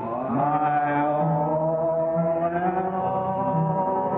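Church congregation singing a slow hymn in long held notes, the melody sliding smoothly between them, on an old recording with no treble above about 4 kHz.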